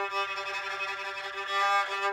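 Homemade cigar-box violin bowed on an open string: one long, steady note that stops at the very end.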